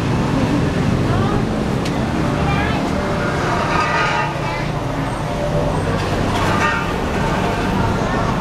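Busy city street ambience: a steady traffic rumble with indistinct voices of people nearby rising over it twice, around the middle and again near the end.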